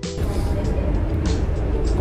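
Steady low rumble of vehicle traffic in a covered bus and minibus interchange, with background music underneath.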